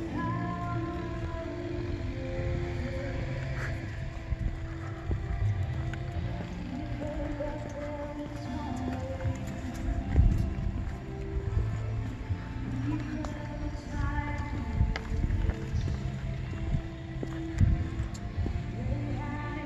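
Live church worship music with singing carrying outdoors, over a low rumble and a few thumps on the microphone.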